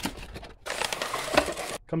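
Cardboard box being opened and handled: a click, then about a second of scraping, rustling cardboard.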